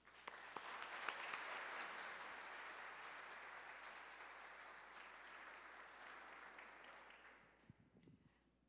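Audience applause from a seated crowd. It swells in the first second, holds, then fades away over the last couple of seconds.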